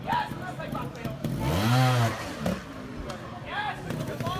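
Trials motorcycle engine revving up and dropping back once, briefly, about a third of the way in, as the rider works the throttle on a steep dirt section. Spectators' voices come before and after it.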